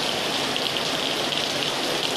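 Heavy rain mixed with small hail pattering steadily on wet paving stones, a dense even hiss.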